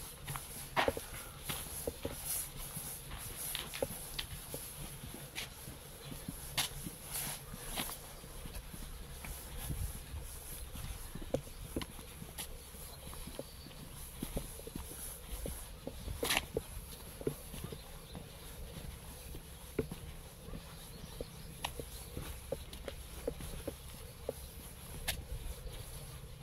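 Footsteps of a person walking over dirt and a stone-paved path: a string of light, irregular taps and scuffs over a low rumble.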